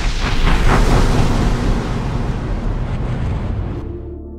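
A loud rushing, rumbling noise, heaviest in the bass, that swells in, peaks about a second in, slowly dies away and then cuts off sharply near the end.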